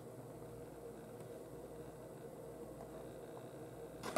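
Quiet room tone: a steady low hiss with a faint hum underneath, and no distinct sound events.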